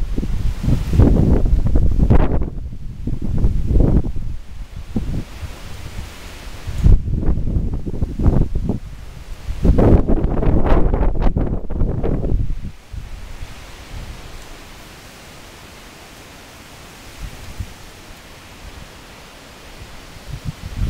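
Strong, gusty storm wind buffeting the microphone in several loud surges, with the leaves of thrashing trees rustling. About two-thirds of the way through, the gusts ease to a quieter, steady rush.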